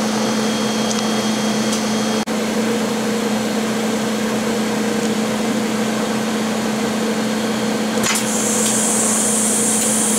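Steady machine hum from the EVG 520IS wafer bonder and its vacuum pump, with a steady low tone and a fainter higher one; it drops out for an instant about two seconds in. A high hiss joins about eight seconds in as the bonding recipe is started.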